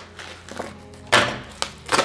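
Plastic bubble wrap crinkling as it is pulled off a package, with a sharp click at the start and a loud crackle a little over a second in.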